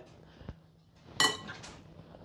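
A metal spoon clinks once against a glass mixing bowl as potatoes are tossed and scooped, with a fainter click about half a second in. Otherwise only quiet room sound.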